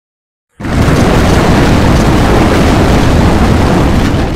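Stampede sound effect: a very loud, dense rumble of many running animals that starts abruptly about half a second in.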